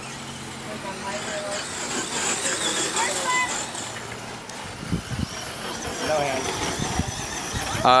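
Electric RC short-course trucks running on a dirt track: a high motor and gear whine with tyre noise on the dirt, with faint voices in the background.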